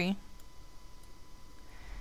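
A few faint computer mouse clicks over quiet room noise.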